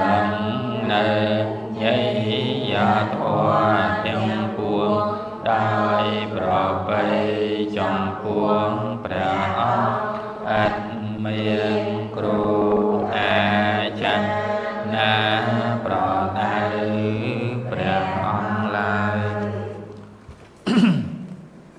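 Buddhist devotional chant recited in unison by a group of voices, on a low, steady reciting pitch with short pauses between phrases, breaking off near the end.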